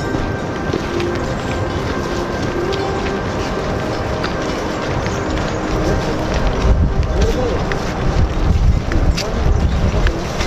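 Indistinct voices over steady outdoor background noise, with a low rumble growing louder from about six seconds in.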